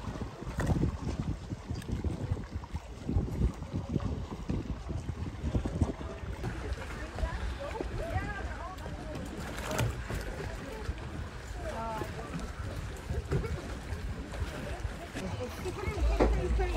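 Wind buffeting the microphone over open sea, a low uneven rumble, with faint distant voices of people in the water now and then.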